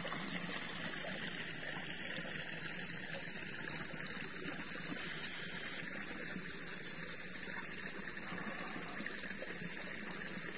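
Steady flowing and trickling of water from a shallow hot spring stream.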